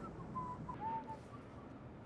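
A man whistling softly, a handful of short, slightly wavering notes of an idle tune, over the low steady hum of a car cabin.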